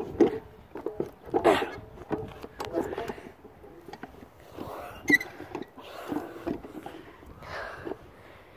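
Footsteps crunching and scuffing through playground wood-chip mulch, irregular and uneven, with the knocks of a handheld phone being moved about.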